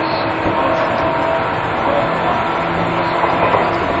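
Seibu New 2000 series electric train running, with its chopper-control traction equipment in use: a steady rumble of wheels on rail with several level humming tones from the traction equipment.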